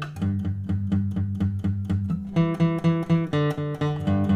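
Steel-string acoustic guitar strummed in a steady rhythm, about four strokes a second, moving through E minor, D and G chords, with chord changes in the second half.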